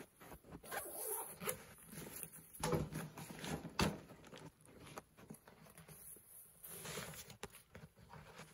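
Rustling and scraping of a nylon tactical backpack being handled and its pouch fumbled open, with a few sharp clicks.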